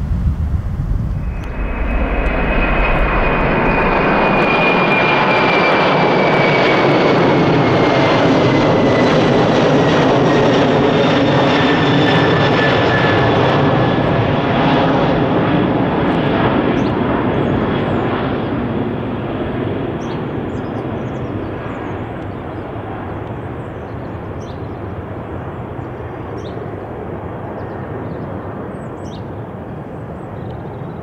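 Four-engine Boeing 747-400 freighter climbing out after takeoff: a loud, steady jet roar with a high engine whine that glides down in pitch as it passes, fading gradually over the last ten seconds. A second of wind noise on the microphone comes before the roar cuts in.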